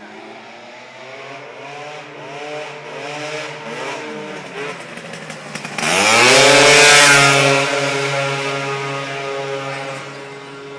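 Gilera Runner scooter with a ported 172 cc two-stroke engine at full throttle. It is heard approaching, then passes close and suddenly loud about six seconds in, with its pitch dropping as it goes by. It then holds a steady, lower note as it moves away and fades.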